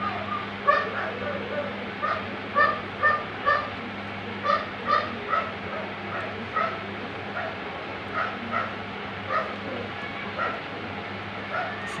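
A pet animal giving short, high-pitched calls over and over, roughly twenty in all, up to about two a second, over a steady low hum.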